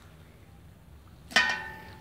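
A metal ladle clinks once against an enamel pot about a second and a half in, ringing briefly as it dies away.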